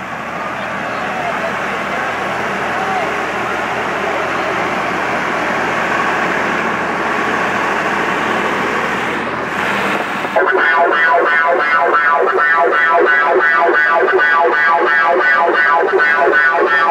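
Loud outdoor crowd din with voices for about ten seconds, then DJ sound-system music cuts in suddenly and loud: a pitched, siren-like electronic tone pulsing about four times a second.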